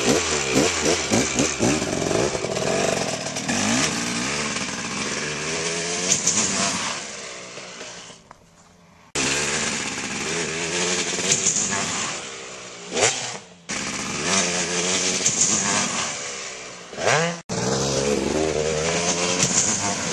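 2003 KTM 250 SX two-stroke dirt bike engine revving while the bike is ridden, its pitch rising and falling with the throttle, with quick rising revs about two-thirds of the way in and again near the end. The sound fades low around eight seconds in and breaks off abruptly several times.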